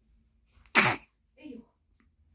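A newborn baby sneezing once, a sharp sudden burst about three quarters of a second in, followed by a short, soft little vocal sound falling in pitch.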